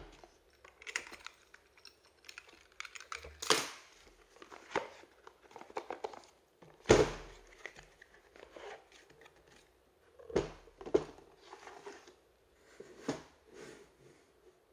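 Cardboard box and plastic Einhell 18 V cordless-tool battery packs being handled and set down on a workbench: a string of separate knocks and rustles, the loudest knock about seven seconds in.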